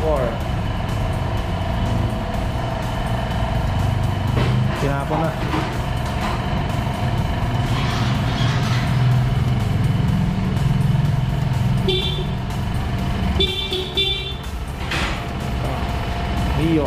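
A motorcycle engine running steadily in a workshop, with voices in the background. Two short horn beeps come near the end.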